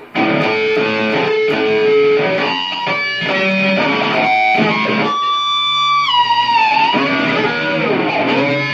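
Distorted electric guitar playing a run of sustained notes with harmonics struck by hitting the strings over the fretboard. About five seconds in a bright, high note rings out, and it slides down in pitch.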